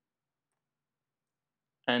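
Near silence, with a spoken word starting just before the end.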